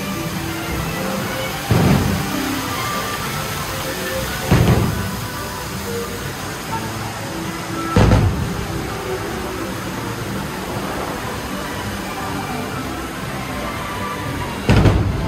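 Three heavy, low fireworks booms a few seconds apart, each trailing off, over the ride's music and steady rushing flume water.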